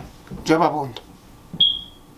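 A single short, steady, high-pitched electronic beep near the end, lasting under half a second, after a brief spoken sound.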